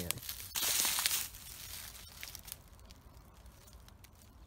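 Rustling and crackling of dry leaves and twigs: one loud burst about half a second in, lasting under a second, then a few faint crackles and quiet rustle.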